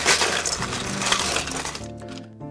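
Ice cubes rattling and crunching as ice is scooped up to fill a cocktail shaker: a continuous clatter that stops shortly before the end, leaving soft background music.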